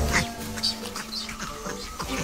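Celebes crested macaques giving a few short, high calls, strongest near the start, over steady background music.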